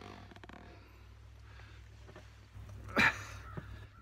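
Wind rumbling on a phone microphone with faint handling noise and clicks, and one short loud burst of handling noise about three seconds in, as a heavy catfish is lifted on a fish grip.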